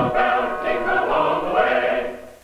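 A choir singing a Christmas carol, several voices together with a steady, sustained sound.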